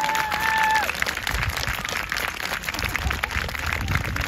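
Crowd of spectators applauding, many hands clapping steadily, with one long held call over the clapping in the first second.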